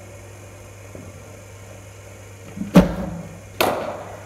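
A cricket bowling machine fires a ball with a loud, deep thump, and under a second later a cricket bat hits the ball with a sharp knock that rings in the enclosed indoor net.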